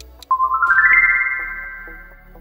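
Countdown-timer ticks, then a bright chime sound effect: a quick run of notes stepping upward in pitch, which then rings out and fades. This is the reveal cue as the countdown reaches zero. Light background music plays under it.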